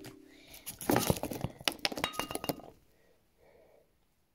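A quick run of light clicks and taps from small objects being handled, with a brief squeak a little past the middle.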